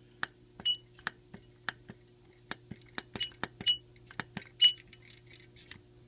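Push-button keys of a 1975 Texas Instruments TI-1250 calculator, faceplate removed, pressed over and over: a quick, uneven run of small plastic clicks, some with a brief high squeak.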